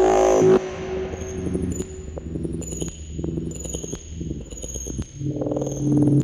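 Verbos Electronics Composition System modular synthesizer patch through Eventide Space reverb: a loud pitched tone cuts off about half a second in. Quieter low, shifting tones follow under short, slightly falling high pings about once a second, and a louder pitched tone swells back near the end.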